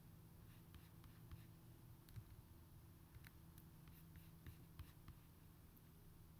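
Near silence: a low steady hum with faint, irregular light clicks from a computer mouse as the image results are scrolled and clicked.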